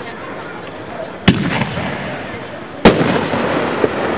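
Two sharp, loud firework bangs about a second and a half apart, each with a short echo after it.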